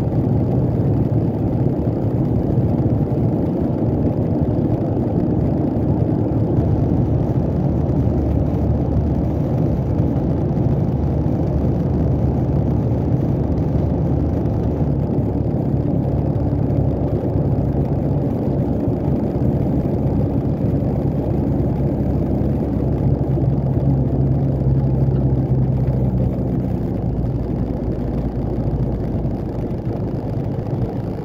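A heavy truck's Cummins diesel engine running steadily, heard from inside the cab as the truck drives at low speed. The low hum shifts in pitch a few times and eases off slightly near the end.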